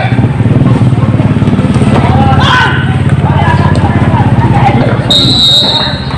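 A vehicle engine running steadily, with voices shouting across the field. A referee's whistle is blown for about a second near the end, as the engine fades.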